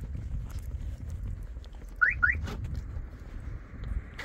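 Car alarm giving two quick rising chirps about two seconds in, the signal of the doors being unlocked by remote, over low wind rumble on the microphone.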